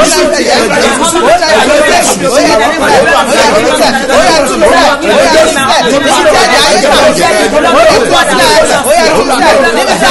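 Several voices praying aloud at the same time, overlapping without pause; no music or other sound.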